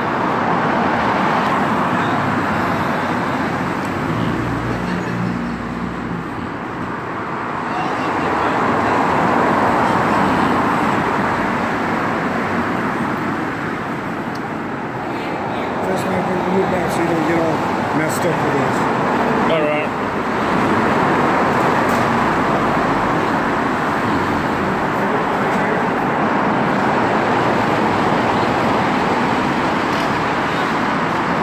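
Steady road traffic noise from cars passing on the adjacent street, swelling and easing as vehicles go by.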